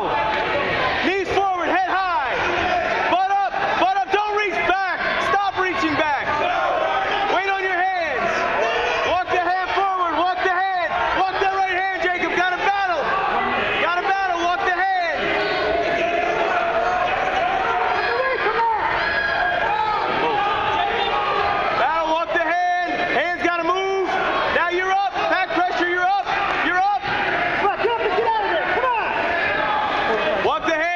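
Several voices shouting over one another without a break: coaches and spectators calling out to the wrestlers during a wrestling match.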